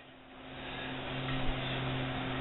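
A low steady electrical hum under a faint hiss, growing a little louder over the first half second, with one soft knock about one and a half seconds in.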